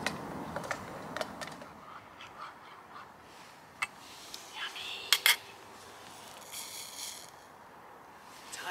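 A metal spoon clinking against a titanium camping mug and pot while stirring food: scattered sharp clinks, the loudest two close together about five seconds in, and a short scrape a little before the end.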